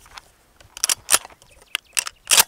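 Shotgun being loaded by hand: a shell is pushed through the loading port into the magazine, giving a few sharp metallic clicks and clacks, mostly in the second half.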